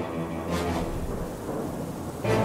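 A rumbling thunder-and-rain sound effect over a held low drone of steady tones, easing slightly near the end.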